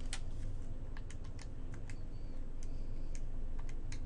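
Keys being pressed in a run of short, irregular clicks as a division is keyed in to work out a voltage, over a faint low hum.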